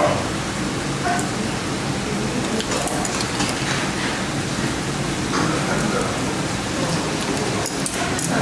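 Stew boiling hard in a Korean earthenware pot (ttukbaegi), a steady bubbling hiss, with a few clicks from metal tongs and kitchen scissors cutting greens in the pot.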